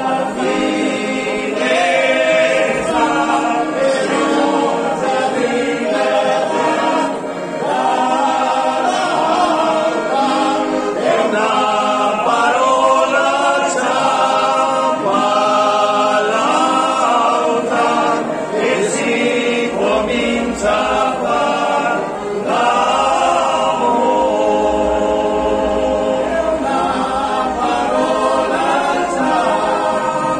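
A small group of men singing a folk song together in several-part harmony, with brief breaks between phrases about seven and twenty-two seconds in.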